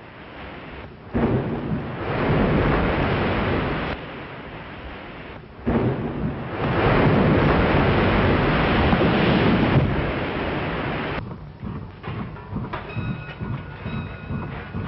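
Two long bursts of loud rushing noise, each starting suddenly: the first about four seconds long, the second about five and a half, fading away near the end.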